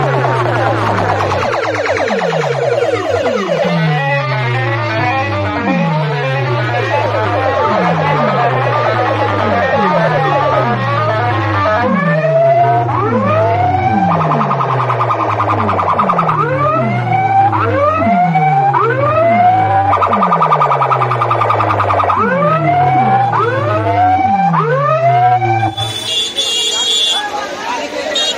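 Loud DJ competition music played through a bank of aluminium horn loudspeakers and speaker boxes: a falling bass drop repeats about once a second, with swooping, siren-like tones over it from about halfway through.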